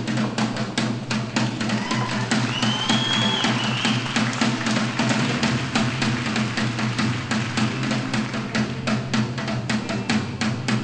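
Instrumental band music with a busy drum-kit beat over a steady bass line and no singing, accompanying a show choir's dance break. A short high held note sounds about three seconds in.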